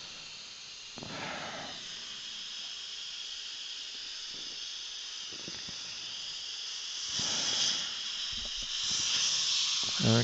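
Air-driven dental handpiece with a small round burr running, a steady high hiss as decay is cleaned out of a tooth. It comes in about a second in and grows louder twice near the end.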